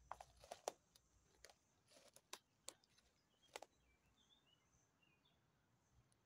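Quiet footsteps through undergrowth: about ten sharp, irregular snaps and crackles of twigs and dry leaves in the first four seconds, then a few faint bird chirps.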